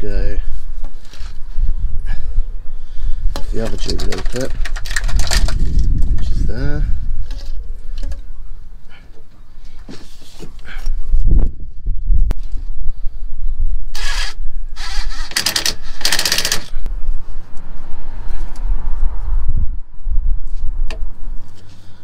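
Low mumbled speech with rustling, scraping handling noises as a rubber coolant hose is worked onto a pipe fitting, over a steady low rumble; a run of loud rustling bursts comes about 14 to 16 seconds in.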